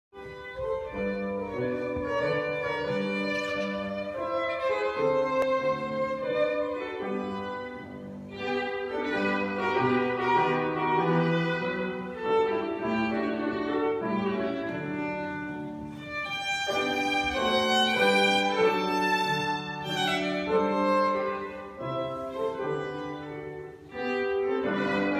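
Violin and piano playing classical music together, the violin carrying the melody over piano accompaniment, with a brighter, higher violin passage about two-thirds of the way through.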